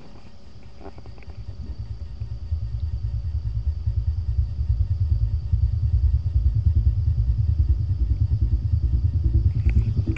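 Logitech Z-623 subwoofer playing a bass-heavy song at maximum volume: a deep pulsing bass beat, about four pulses a second. It swells from about a second in and then stays loud.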